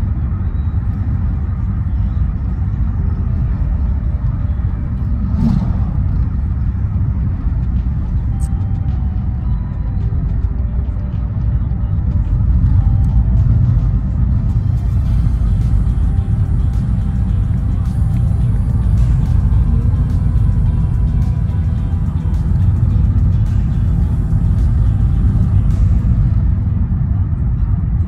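Steady low rumble of road and engine noise inside a moving car's cabin, with music playing over it.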